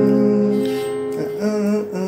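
Acoustic guitar F minor chord, struck once just before and left ringing, slowly fading in the slow breakdown.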